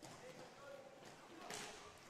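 Faint rink hockey play: quarter-size skate wheels, sticks and the ball on the wooden rink floor, with a sharper stick-on-ball hit about a second and a half in as a shot is taken.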